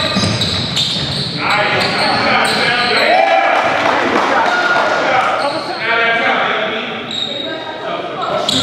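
Live basketball game sound in a large gym: the ball bouncing on the hardwood floor as it is dribbled up the court, with players' voices mixed in.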